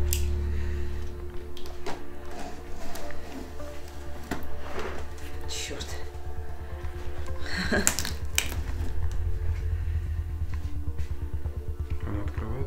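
Background music: a low, steady drone with held tones, with a few scattered light clicks and handling noises over it.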